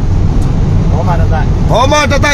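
Steady low rumble of a moving vehicle's engine and road noise inside the cabin, with a man's voice starting again faintly about a second in and fully near the end.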